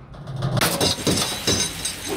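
A crash: several sharp impacts in quick succession with a bright, high ringing, starting about half a second in.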